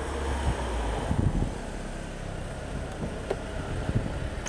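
Street ambience with a car engine's low rumble under a steady haze of traffic noise, heaviest in the first second and a half. Near the end come two short sharp clicks as a car door is opened.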